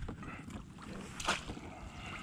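Water splashing as a landing net scoops a hooked southern flounder out of the sea, with one sharp splash about a second and a half in. Wind buffets the microphone throughout.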